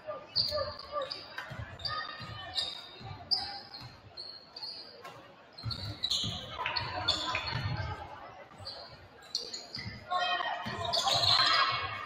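Basketball dribbled on a hardwood gym floor, a steady run of thuds a few times a second, with short high sneaker squeaks as players cut and shouted voices rising near the end, all ringing in a large gym.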